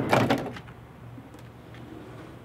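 A knock at the start, then a few faint knocks and clicks as things are handled inside a van through its open side door.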